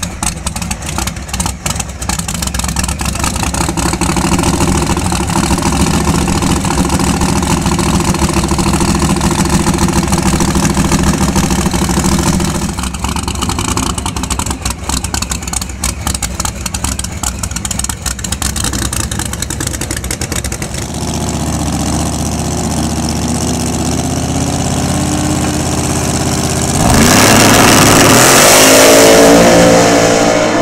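ProCharger F-1X supercharged Hemi V8 of an X275 drag-radial Dodge Challenger running steadily at the starting line. About 27 seconds in it launches at full throttle: much louder, with a fast rising pitch.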